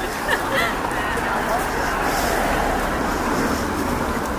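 Crowd chatter: many voices talking at once in the street, with road traffic noise underneath.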